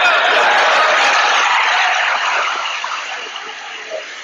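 A large audience applauding and cheering, with some voices calling out, loud at first and slowly dying down in the second half.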